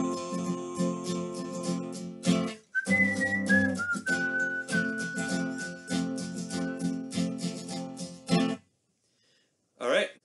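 Acoustic guitar strummed in a steady rhythm, with a held note closing the verse and then a high whistled melody over the strumming that steps down once and holds. The guitar stops abruptly about 8.5 seconds in.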